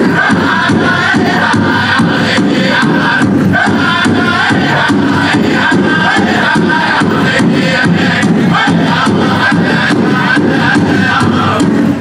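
Powwow drum group singing in chorus over steady, even beats on a big drum, loud throughout.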